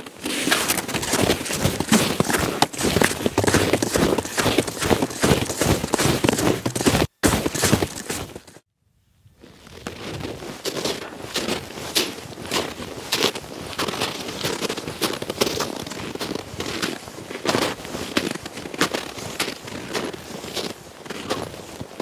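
Footsteps crunching through snow in a quick, continuous run, breaking off briefly about nine seconds in before going on.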